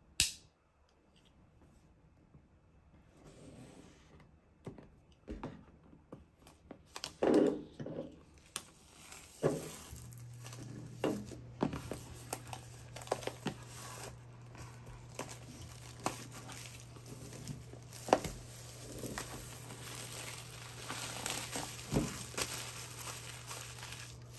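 Plastic shrink wrap being cut and peeled off a cardboard box: irregular crinkling and tearing rustles with scattered sharp crackles. A faint steady low hum runs under the middle stretch.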